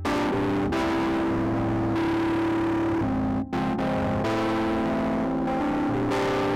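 An electronic stage keyboard played live: held notes and chords in a sustained synth-like tone, with a short break about three and a half seconds in.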